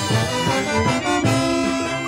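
Colombian brass band playing live: trombones, sousaphones, clarinets and trumpets over bass drum, cymbal and snare, with a sliding low brass line under the melody.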